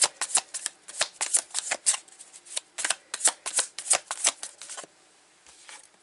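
Tarot deck being shuffled by hand: a quick run of crisp card snaps, about five a second, that stops about five seconds in, followed by a few faint ticks.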